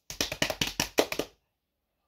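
Hands drumming rapidly, about a dozen quick slaps a second for just over a second, as a drumroll before an announcement.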